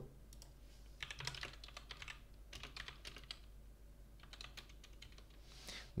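Faint typing on a computer keyboard: quick key clicks in several short bursts as a terminal command is typed.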